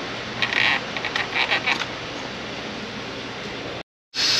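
A few short, scratchy creaking sounds in the first two seconds, over a steady shop hum: a gloved hand working the oil filter housing cap, which has been cracked free so the old oil drains down.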